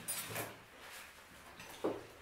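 Chewing crunchy fried onion rings: a few crisp crunches in the first half-second, then quieter chewing.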